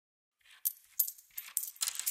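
Coins clinking and dropping as a sound effect opening a song, a handful of quiet, bright metallic clinks at uneven intervals, starting about half a second in.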